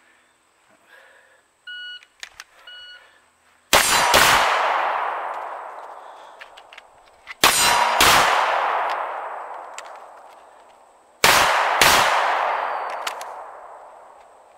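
Two short electronic beeps from a shot timer start the run, then three double taps from a semi-automatic pistol, each pair of shots about half a second apart and a few seconds from the next, every pair followed by an echo that dies away over several seconds.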